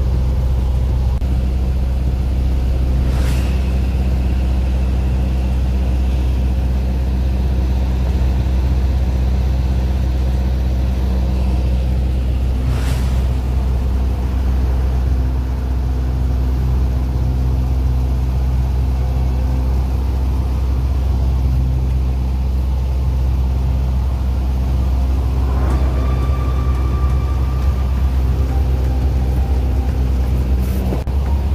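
Single-engine airplane's piston engine and propeller droning steadily in level flight, heard from inside the cockpit. Two short clicks come about three and thirteen seconds in, and a faint higher tone sounds near the end.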